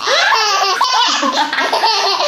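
Baby laughing hard, one laugh straight after another, a laughing fit set off by the dog's tricks.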